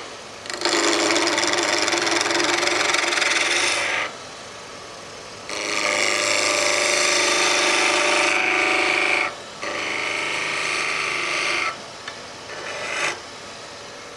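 Wood being cut on a running lathe: a turning tool held against the spinning workpiece gives a steady hissing scrape, rounding the piece off. It comes in three long passes of a few seconds each and a short one near the end, with the lathe's quieter hum between them.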